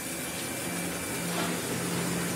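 Soybean grinding mill running steadily as soaked soybeans are fed into its steel hopper: an even, rushing machine noise with a low steady hum.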